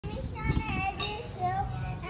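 Young children's high-pitched voices talking, with no piano playing yet.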